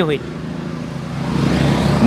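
A motor vehicle going by on a nearby road, its engine and road noise growing steadily louder as it approaches.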